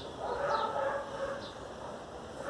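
A distant animal call, about a second long, with faint high chirps of birds.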